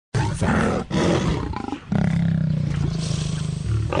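Male lion snarling: two harsh, noisy snarls in the first two seconds, then a long, low, rough growl that dies away near the end.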